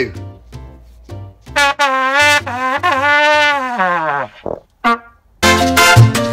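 A trumpet plays a loud, wavering held note for about two and a half seconds, ending in a long slide down in pitch. Two short notes follow, then backing music with a beat comes in near the end.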